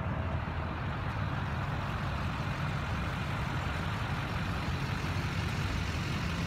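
Steady low rumble of vehicle noise with a broad hiss over it, unchanging throughout.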